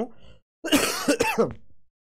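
A man clearing his throat: one rough, rasping burst about a second long, starting just after half a second in.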